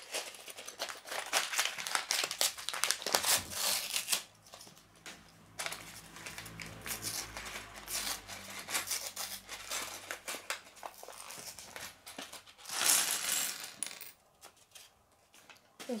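Paper LEGO parts bag crinkling and rustling as it is handled and torn open, mixed with the clicking clatter of small plastic bricks tumbling onto a wooden table. A louder stretch of rustling comes about thirteen seconds in.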